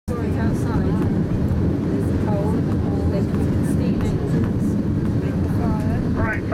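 Steady heavy rumble of a railway carriage running along the track, heard from on board, with people's voices talking faintly over it.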